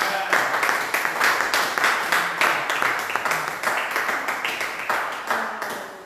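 Church congregation clapping together in a steady rhythm, about three claps a second, with voices mixed in; the clapping dies away near the end.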